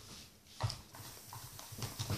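A few faint, short taps and handling knocks over low room noise, the clearest about two-thirds of a second in.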